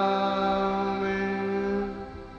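A long held final note of a sung Tamil hymn, a steady chord-like tone over soft accompaniment, cutting off near the end. Quieter sustained instrumental music carries on after it.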